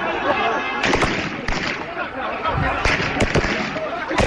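Gunfire in amateur protest footage: several sharp gunshot cracks scattered through the clip, over shouting voices.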